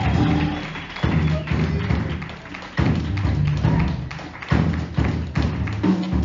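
Live acoustic jazz: an upright double bass plays low notes under a busy drum kit with many sharp hits. A tenor saxophone line trails off right at the start.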